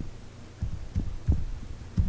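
Keys being typed on a computer keyboard, heard as dull low thumps at an uneven typing pace, about five in two seconds, over a steady low hum.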